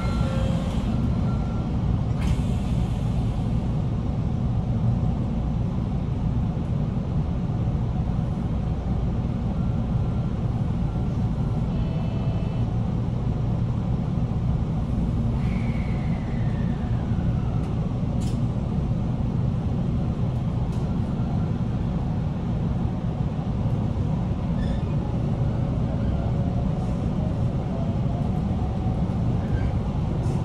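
Steady low rumble and hum of electric trains standing at a station platform, heard from inside a passenger car. A few faint tones sound midway, and near the end a faint rising whine comes in as a train starts to pull away.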